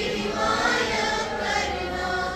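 A small group of schoolgirls singing together in unison into a microphone, with slow, long-held notes.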